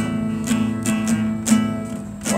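Nylon-string classical guitar strummed by a beginner on his first lesson, one chord ringing with strokes roughly twice a second.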